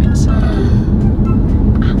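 Steady low rumble of a car's cabin on the move, with music and faint voices over it.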